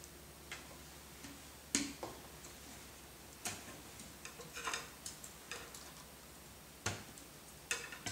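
Irregular sharp plastic clicks and taps as a T-Rex 250 helicopter's landing skid is worked onto the side tabs of its frame, the loudest click a little under two seconds in.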